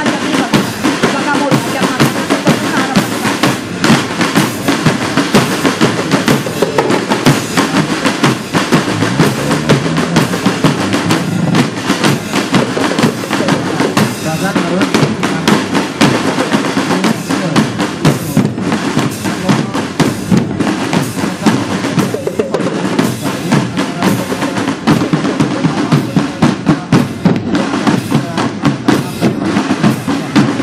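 Marching drum band playing: snare drums and bass drums beating a fast, dense rhythm without a break.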